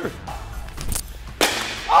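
A bat hitting a pitched ball in an indoor batting cage: one sharp crack about one and a half seconds in, with a short ring after it.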